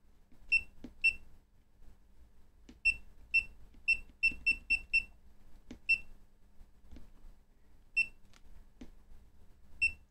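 FNIRSI LC1020E LCR meter giving short, high key-press beeps as its buttons are pressed, now that its volume is switched on. There are about eleven beeps at irregular intervals, a quick run of them around four to five seconds in, with faint clicks of the buttons between.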